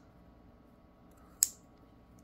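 A single sharp metallic click from a Rough Rider lockback pocketknife as its blade is swung open and snaps into its lock, about one and a half seconds in.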